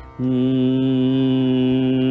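A man's voice holding one steady sung note, starting a moment in and lasting a little over two seconds without wavering.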